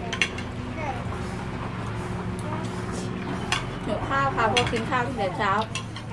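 Metal cutlery clinking and scraping on china plates as people eat, with a few sharp clinks, over a steady low hum. A voice comes in from about four seconds in.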